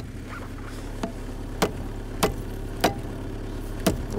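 Hammer blows on a tire packed with ice, six sharp strikes spaced a little over half a second to a second apart, knocking the ice to crack it, over a steady low hum.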